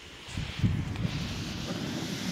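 Loose gunpowder catching light and burning in a tall flame: a rushing whoosh with a low rumble that swells up about half a second in and then burns on steadily.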